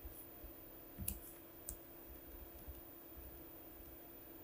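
A few faint clicks from a computer keyboard, spaced out about a second apart, over a low steady hum.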